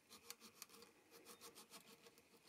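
Very faint, quick back-and-forth scratching of sandpaper rubbed inside the truss rod access hole of a Stratocaster's maple headstock, roughing up the surface before gluing.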